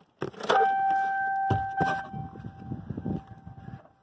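The ignition key clicks to on, then the car's dashboard warning buzzer sounds one steady high tone for about three seconds, fading after the first couple of seconds under rustling and knocking handling noise.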